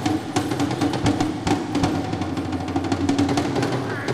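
Live Tuvan folk music: a frame drum struck quickly and unevenly with a beater, over a steady low drone.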